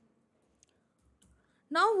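Mostly near silence with a few faint computer keyboard key clicks, one about half a second in and a couple more just past the one-second mark. A woman starts speaking near the end.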